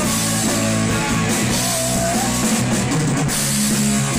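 Live rock band playing: electric guitars, bass guitar and drum kit, loud and steady.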